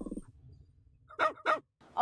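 A music jingle cuts off, and about a second later a dog barks twice in quick succession.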